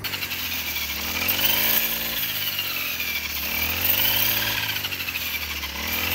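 Petrol brush cutter engine running under load as it cuts wheat, its pitch rising and falling every couple of seconds as the blade sweeps through the stalks.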